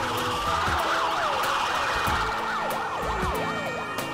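Several emergency-vehicle sirens wailing at once, their pitches sweeping up and down and overlapping, with low repeated thuds underneath.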